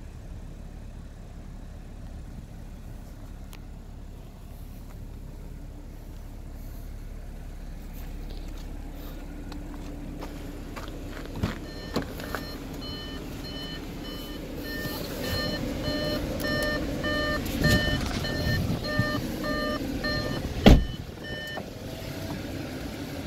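Audi S5's engine idling under a car warning chime that beeps repeatedly, about two beeps a second, through the second half, with the driver's door standing open. The beeping stops and a door shuts with a single loud thump near the end.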